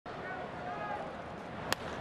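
Ballpark crowd murmur, then near the end a single sharp crack as a wooden baseball bat hits a pitched ball for a deep drive.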